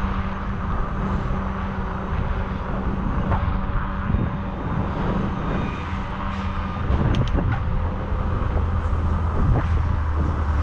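Wind and road noise from riding a bicycle, with the steady low hum of idling semi-truck engines parked along the road; the hum drops lower and grows stronger about two-thirds of the way through. A few light clicks come near the middle.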